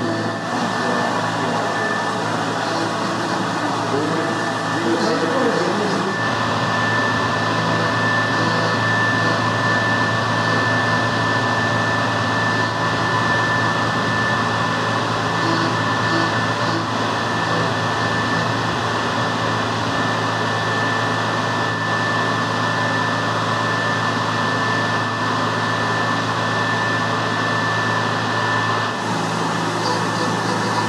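Tormach 770MX CNC mill's spindle running with an end mill roughing an aluminum workpiece on a rotary fourth axis, flood coolant spraying over it. A steady high whine sits over a constant hiss and low hum.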